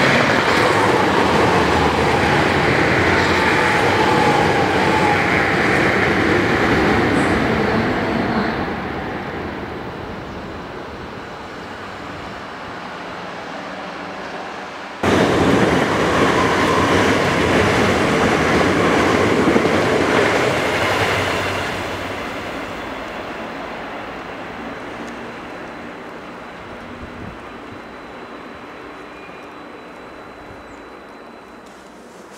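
Two electric passenger trains passing close at speed, a loud rushing of wheels on rail. The first fades away over about ten seconds; then, after a sudden cut, a second pass comes in just as loud and fades out slowly through the last several seconds.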